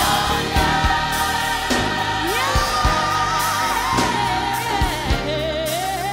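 Gospel music: a choir singing with vibrato over a band with a steady beat.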